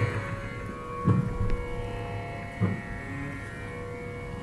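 A steady pitch drone of the kind that accompanies Carnatic singing, held without change, with two short dull thumps about a second in and near three seconds in.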